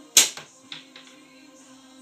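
A slingshot shot: one loud, sharp snap as the drawn bands are released, with a smaller knock right after it and a couple of lighter clicks within the next second.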